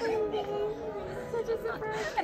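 Voices of several people chatting at a gathering, no single speaker clearly in front.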